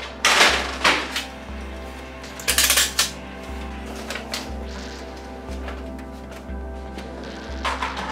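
Background music with a steady beat, over a few short bursts of plastic clatter and paper handling as a Canon PIXMA printer's paper cassette is pulled out and loaded with sheets of paper.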